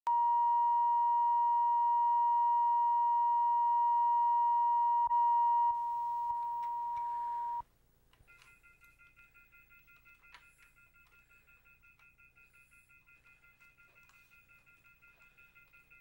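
Steady line-up test tone recorded with colour bars at the head of a videotape, cutting off abruptly about seven and a half seconds in. It is followed by faint high tones that pulse about three to four times a second.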